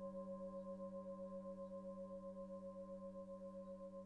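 A singing bowl rings on after a strike, its tones pulsing with a steady wavering beat and slowly fading.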